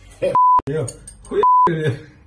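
Two short, steady censor beeps, each about a quarter second long, blanking out words in snatches of speech, with the sound cut off around each beep.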